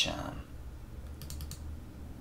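A short sharp sound right at the start, the loudest moment, then a quick run of four or five computer keyboard clicks a little past the middle, over a low steady hum.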